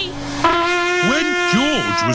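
Toy trumpet blown in one long, steady, buzzy note that starts about half a second in, with swooping rising-and-falling tones over it in the second half.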